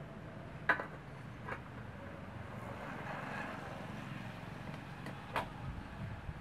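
A few sharp clacks as a Honda scooter is handled by hand, one about a second in, another soon after and a third near the end, over faint outdoor background.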